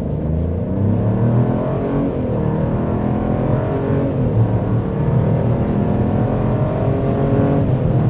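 A 1.3-litre turbocharged three-cylinder engine under hard, full-throttle acceleration from a standstill to about 60 mph, heard from inside the cabin. Its note climbs in pitch, dips twice in the first half, then holds fairly steady as speed builds.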